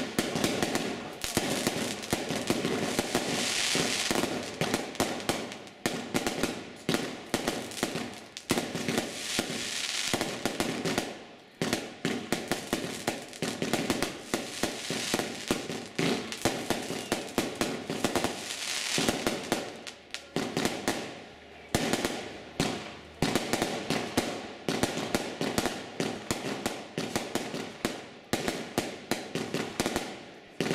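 Aerial fireworks battery firing in rapid succession: a dense run of shots as tubes launch and the shells burst. There are several stretches of crackle and two brief lulls.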